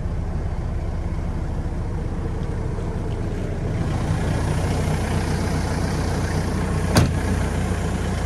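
Diesel engine of a Hamm DV+ 70i tandem asphalt roller idling steadily. About halfway through it is heard from outside the cab and sounds fuller and brighter. A single sharp knock sounds near the end.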